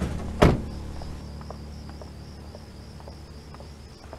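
A car door slammed shut once about half a second in, followed by crickets chirping steadily.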